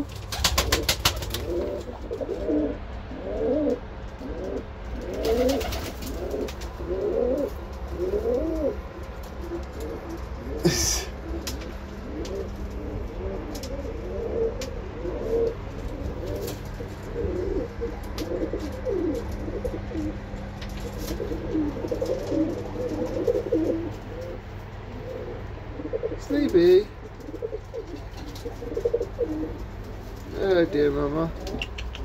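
Several Birmingham Roller pigeons cooing over and over, their rolling coos overlapping, over a steady low hum. A quick run of clicks comes about a second in, and single sharp knocks come near the middle and near the end.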